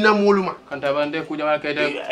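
A man talking in a conversational voice, with short pauses between phrases.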